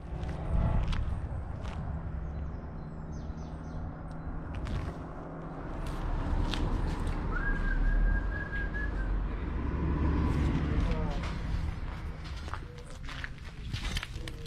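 Outdoor field sound from a handheld camera: a low rumble of wind on the microphone, with scattered footsteps and handling clicks.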